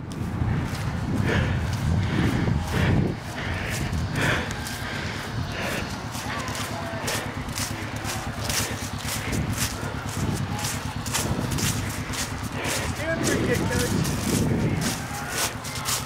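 Distant voices of people shouting over the steady rumble of a hand-held camera being carried, with the regular footfalls of someone walking on grass.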